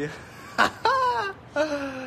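A man laughing: a short sharp sound about half a second in, then two drawn-out vocal sounds that each fall in pitch.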